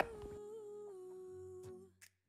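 A faint single held note, steady for nearly two seconds and easing slightly lower in pitch, with a soft click near the end.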